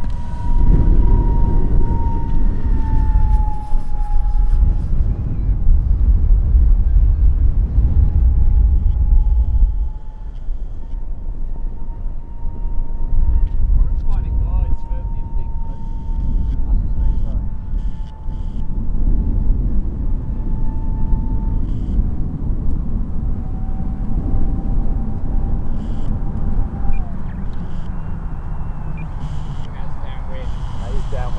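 Electric motor and propeller of a battery-powered RC XB-70 Valkyrie model in flight, a steady whine that dips in pitch a couple of times as the plane flies. Heavy wind buffeting on the microphone rumbles underneath and is the loudest sound, strongest in the first ten seconds.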